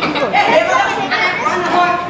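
Speech: young stage actors speaking their dialogue.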